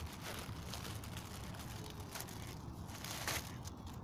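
Plastic packaging crinkling and rustling as a parcel bag is handled and a mesh bag is pulled out of it, over a steady low rumble.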